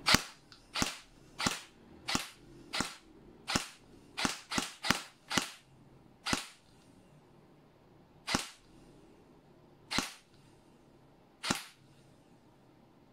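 G&G ARP9 2.0 airsoft electric gun (AEG) firing single semi-automatic shots, about fourteen in all. The shots are irregularly spaced, with a quick run of four about four to five seconds in, then slowing to one every second and a half to two seconds.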